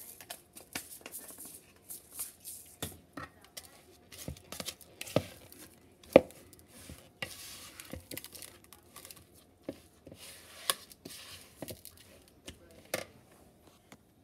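Silicone spatula stirring thick cookie dough in a plastic mixing bowl: irregular scrapes and knocks against the bowl, with a few sharper taps.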